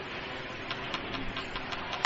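Steady low background hiss and room noise, with a few faint clicks about a second in.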